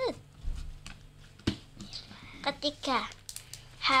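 Slime being kneaded and squeezed by hand, giving a few sharp sticky clicks and squelches, with short bits of a child's voice in between.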